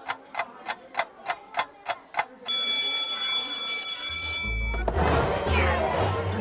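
Clock ticking about four times a second, then a bell ringing steadily for about two seconds before cutting off, the signal that school is out.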